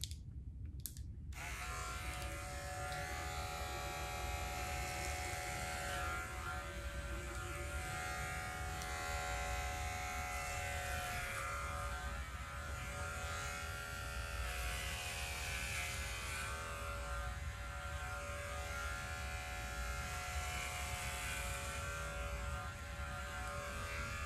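Corded electric hair clippers fitted with a number-two guard switch on about a second in and run steadily as they cut short hair close to the scalp.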